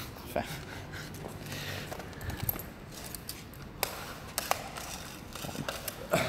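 A few sharp clicks about four seconds in, from a retractable tape measure being handled, over faint room noise and a brief murmured word at the start.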